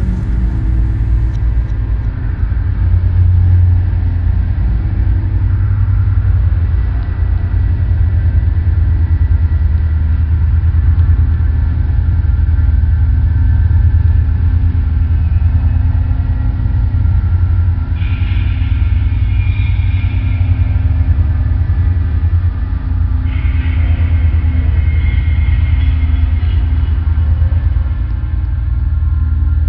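Loud, steady low rumbling drone in a dark experimental track. Brighter, harsher layers come in over it about two-thirds of the way through and again near the end.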